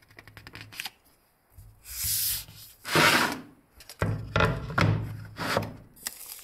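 Hand handling sounds: a quick rattle of light clicks and paper rustling, then several harsh ripping bursts as double-sided tape is pulled off the roll and pressed onto a plywood sheet, the loudest about three seconds in.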